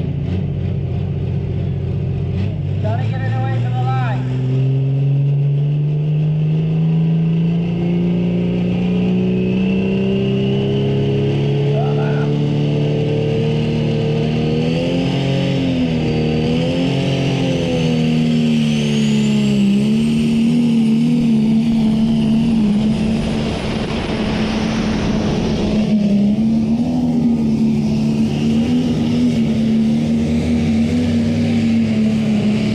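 A Prostock pulling tractor's turbocharged diesel engine working hard under load down the track. Its pitch climbs steadily for about twelve seconds, then wavers and holds high, while a high turbo whine rises above it.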